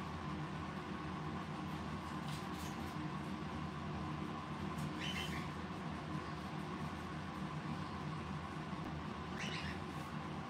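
A pet parrot giving three short, faint calls a few seconds apart over a steady low room hum. This is the little song that the owner takes for a hormonal hen's song.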